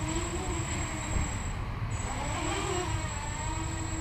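Small quadcopter's electric motors and propellers buzzing as it hovers at very low throttle, the pitch rising and falling as the throttle is worked.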